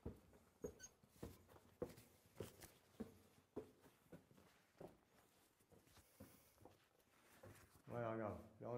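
Faint footsteps walking at a steady pace, about three steps every two seconds, on the floor of an underground stone tunnel.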